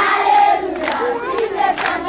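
A group of children shouting and cheering together, several voices at once.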